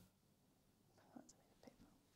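Near silence, with a few faint, brief soft sounds between about one and two seconds in.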